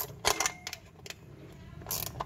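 A wrench snugging a bolt on a Mitsubishi 4D56 diesel's valve cover, just until the rubber seal is compressed: a few short, sharp metal clicks, three close together at the start and one more about a second and a half later.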